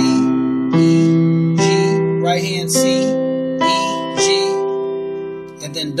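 Digital keyboard in a piano voice playing sustained chords, a new chord struck about every second, each fading before the next.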